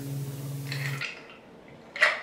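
A steady low hum that cuts off abruptly about halfway through, leaving quiet room tone.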